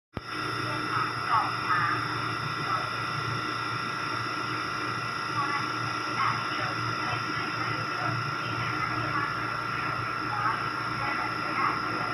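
Steady hum with several constant high whines from a standing Taiwan Railway EMU3000 electric multiple unit's onboard equipment, with faint voices mixed in.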